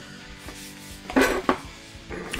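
Perforated plastic shrink-wrap seal torn off a hot sauce bottle's cap by hand: a short crackling rip about a second in, then a sharp click.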